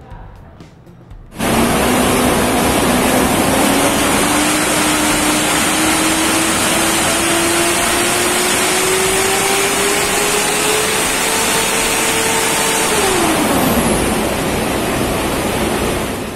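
Mitsubishi Montero's 2.5-litre VGT turbodiesel under full load on a hub dyno: a loud rush of noise starts suddenly about a second in, with an engine tone climbing steadily as the revs rise for about twelve seconds, then falling away near the end as the throttle is lifted.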